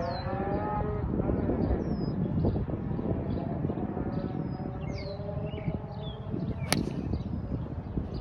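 A golf club strikes a teed ball once with a sharp crack about two-thirds of the way in, over birds chirping repeatedly. A low, drawn-out pitched sound carries through the first couple of seconds.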